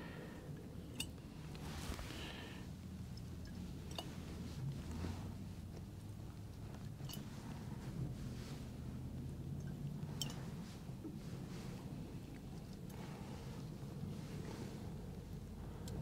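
Faint squishing of mandarin orange pieces being squeezed by hand over a glass jug of honey water, with a few soft clicks spread through, over a low steady hum.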